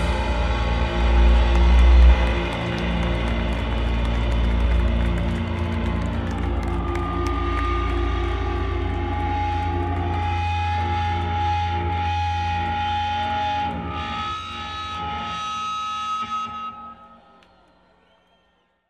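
Live heavy metal band: drums and distorted electric guitars, then long held guitar notes ringing out, fading away near the end.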